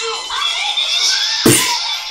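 Cartoon dialogue from an anime soundtrack, with one sudden sharp hit about one and a half seconds in.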